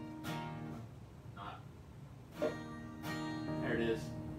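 Acoustic guitar strummed twice on an E-flat major barre chord, once just after the start and again about two and a half seconds in, each chord left ringing.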